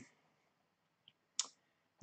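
Near silence, broken once, about one and a half seconds in, by a short mouth click.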